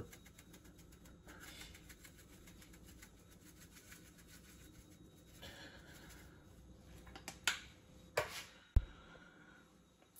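Faint rattling of a black pepper shaker being shaken, then a few sharp clicks and taps near the end.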